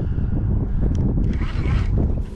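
Wind buffeting the microphone, a loud, steady low rumble, with a few light clicks around the middle and a brief faint voice near the end.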